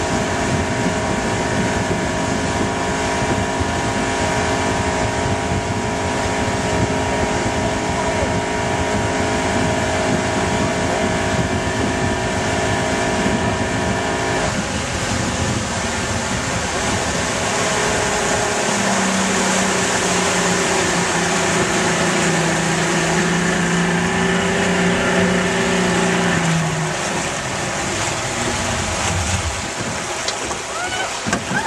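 Motorboat engine running at speed while towing, over a steady rush of wind and water wash. About halfway through the engine note changes, and a lower steady tone holds from about 19 seconds until it eases off near 27 seconds.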